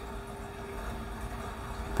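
Steady low background hum with a faint steady tone: indoor room tone, with no other sound standing out.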